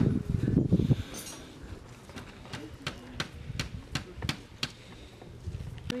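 A loud low rumble in the first second, then a steady series of sharp taps, about three a second.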